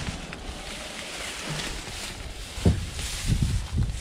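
Wind buffeting the microphone, with a few short low knocks in the last second and a half as the driver's door of a 1961 Ford Falcon wagon is pulled open.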